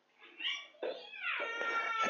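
A cat meowing: a short call, then a longer one about a second in that falls in pitch.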